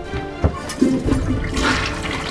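A thump about half a second in, then a toilet flushing with a rush of water near the end.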